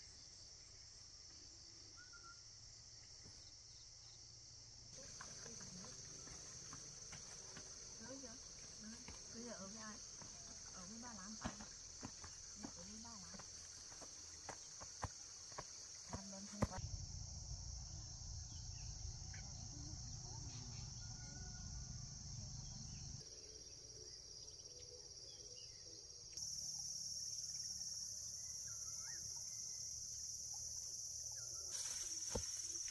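Steady high-pitched drone of insects. In the middle come faint voice-like sounds and a run of short clicks, like footsteps on a path.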